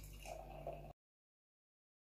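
Faint pouring of strained green juice from a glass jug into a wine glass, cutting off suddenly about a second in.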